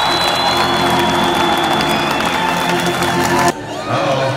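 Stadium crowd cheering and applauding over music, with a long high held whistle above it. The sound cuts off abruptly near the end to quieter open-air crowd noise.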